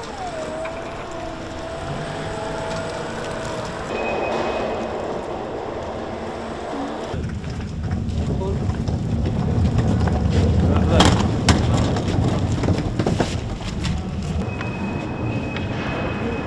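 Warehouse work sounds. For the first few seconds an electric forklift's drive motor gives a steady whine. After about seven seconds comes the low rumble and rattle of a loaded hand pallet jack rolling over a concrete floor, with a few sharp knocks.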